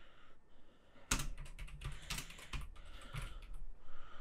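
Typing on a computer keyboard: a rapid run of keystroke clicks that starts about a second in.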